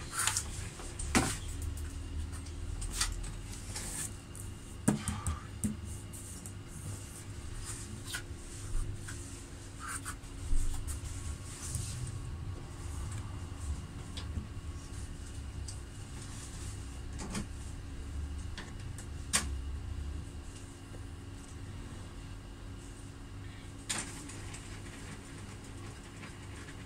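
Epson L120 inkjet printer running its head-cleaning cycle: a steady low mechanical hum with scattered clicks.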